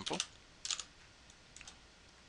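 Typing on a computer keyboard: a few quiet keystrokes in two short clusters, one a little under a second in and another around a second and a half in.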